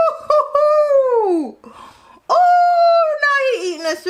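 A person's high, drawn-out howling "ooooh" in excited reaction, given twice. The first call falls away in pitch over about a second and a half. After a short pause the second holds steady, then wavers lower and breaks off.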